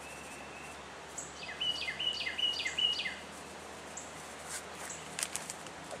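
A songbird singing a short two-part phrase, a falling note and a level one, repeated about five times in quick succession over a quiet outdoor background. A few faint high ticks follow near the end.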